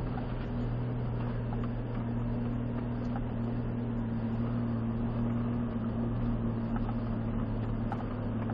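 Steady low drone of a Ford Raptor truck heard from inside its cabin, with engine hum and tyre noise as it crawls along a rough dirt trail at walking pace.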